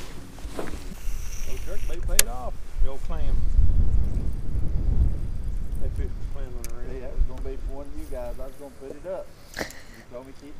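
Indistinct voices talking over a low rumble, with a sharp click about two seconds in and another near the end.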